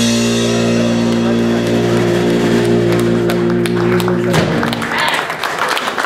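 Live blues band's final chord, electric guitars and bass with cymbal wash, held and ringing out for about four seconds before it stops. Clapping and a voice follow near the end.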